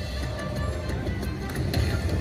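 Lightning Dollar Link Chica Bonita slot machine playing its hold-and-spin bonus music during a free spin, with a few light clicks near the end. A low, steady casino din runs underneath.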